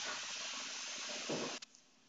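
Steady background hiss of an open microphone, with a brief faint bit of voice near the middle. The sound then cuts off abruptly to dead silence about one and a half seconds in.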